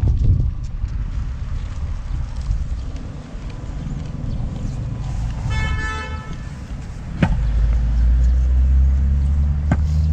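Wind buffeting the microphone, with street traffic, and a vehicle horn giving one short toot about five and a half seconds in. The wind noise grows heavier from about seven seconds in.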